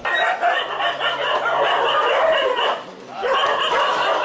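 A large pack of dogs barking and yelping together in a continuous din, excited at feeding time. The din dips briefly about three seconds in.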